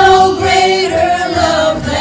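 Female worship singers, a lead and two backing voices in microphones, singing a slow hymn in long held notes over acoustic guitar.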